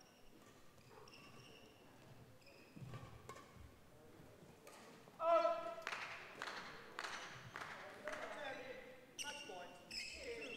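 Badminton play in a large echoing hall: faint squeaks of court shoes early on, then from about five seconds in a loud shoe squeak followed by a run of sharp racket-on-shuttle hits and footfalls, roughly two a second.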